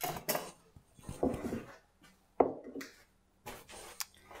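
Scattered knocks and clinks of dishes and utensils being handled and set down on a wooden countertop, the sharpest knock about halfway through.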